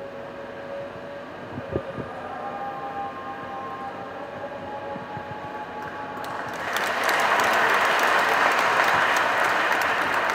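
A congregation breaks into applause about two-thirds of the way in and keeps clapping steadily. Before that there is only faint room sound with a few small knocks.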